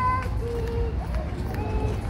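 A high voice sings a few wordless, held notes over a steady low rumble of wind and walking on the microphone.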